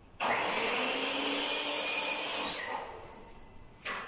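Electrical wires being pulled through conduit into a wall switch box, the insulation rubbing against the conduit: a loud rasping rub lasting about two and a half seconds that fades out, then a brief second pull near the end.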